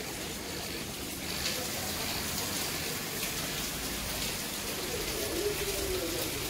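Home aquarium water bubbling and trickling: a steady watery hiss of air bubbles from the aerator rising through the tank, with faint irregular bubble ticks.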